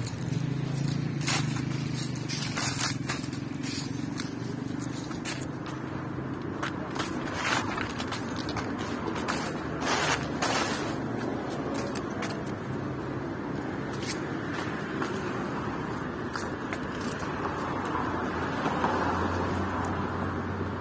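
Town park ambience: a steady background hum of traffic, with a low engine drone fading out over the first few seconds, and scattered short crunches and scrapes of footsteps on dry fallen leaves.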